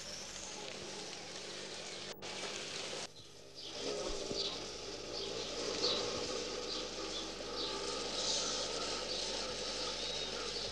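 Rural outdoor ambience on an old film soundtrack: a steady hiss for the first three seconds, then after a brief drop, a low steady drone with short, high bird chirps repeating about twice a second.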